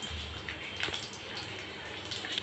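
Faint steady low hum and hiss from the stove under a pan of cooking oil that is just starting to heat, with two soft clicks about a second in.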